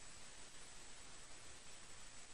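Faint, steady hiss of room tone, with a thin high-pitched whine held throughout.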